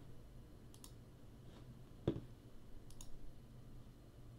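Faint computer mouse clicks. There is a quick double click about a second in, a louder, duller click a second later, and another quick double click about three seconds in.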